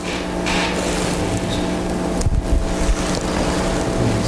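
A steady drone of several held low tones over a hiss, with a dull thump a little past halfway.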